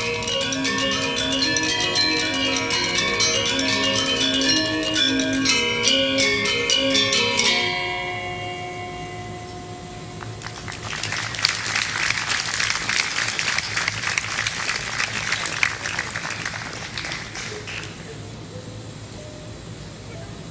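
A Balinese gamelan of bronze-keyed metallophones plays fast, dense patterns and stops together about seven and a half seconds in. The bronze keys ring on and die away. A few seconds later the audience applauds for about seven seconds.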